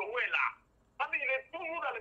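Speech only: a voice talking in two short phrases, the second starting about a second in.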